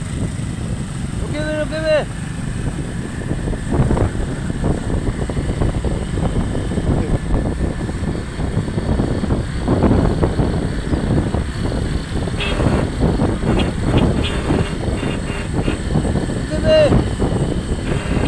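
Motorcycle engine running steadily while riding, with road rumble and wind noise on the on-board microphone.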